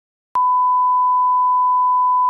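Broadcast test tone, the standard 1 kHz reference tone played with colour bars, signalling a technical-difficulties interruption of the feed. It switches on abruptly about a third of a second in, after dead silence, and holds as one loud, steady, pure beep.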